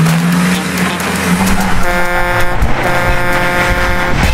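A multi-note vehicle horn sounds two steady blasts, a short one and then a longer one, over engine noise.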